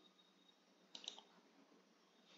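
A computer mouse clicking two or three times in quick succession about a second in. The rest is near silence.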